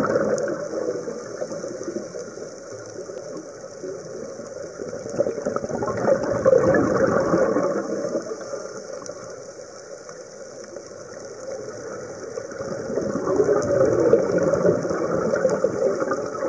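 Scuba divers' exhaled breath bubbling from their regulators, heard underwater as a steady rush of bubbles. It swells and fades three times: at the start, about six seconds in, and again from about thirteen seconds in.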